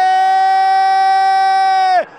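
A Brazilian football commentator's long drawn-out goal cry, one loud held "Gooool" on a steady high pitch that dips and breaks off at the end.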